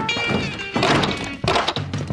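Cartoon chase music with two loud thunks, one about a second in and one near the end.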